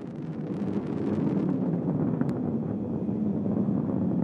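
Atlas V rocket in powered ascent, its RD-180 main engine throttled down for max-Q with the solid rocket boosters burning: a steady low rumble that grows a little louder over the first second, with a faint click about halfway.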